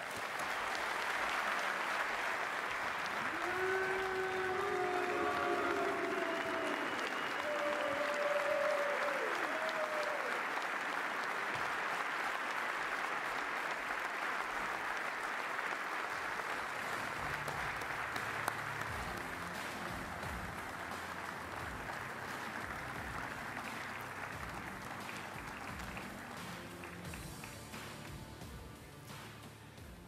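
Large audience applauding in a standing ovation, with a few cheers in the first ten seconds. Music comes in about halfway through beneath the applause, which slowly fades.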